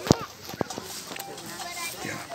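Two sharp knocks about half a second apart, the first much louder, over faint children's chatter.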